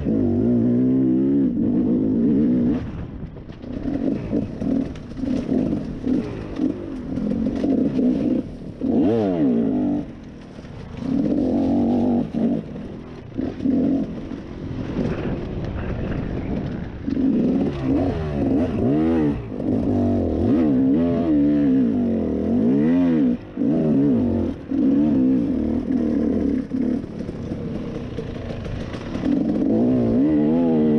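Dirt bike engine being ridden hard, its pitch climbing and falling over and over as the throttle is worked through the gears. The level dips briefly each time the rider rolls off, several times over.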